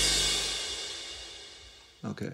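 A minimal techno track ending: the kick drum has stopped and a last crash rings out, fading steadily away to silence over about two seconds.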